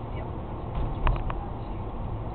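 Steady low rumble of a car's engine and tyres heard inside the cabin while driving slowly, with a few short, sharp sounds about a second in.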